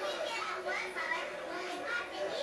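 Several people talking over one another: a steady babble of overlapping voices in a crowded bar.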